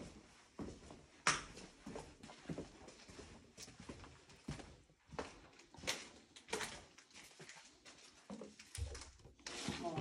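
Footsteps walking down a hallway with debris on the floor, heard as irregular faint clicks and knocks.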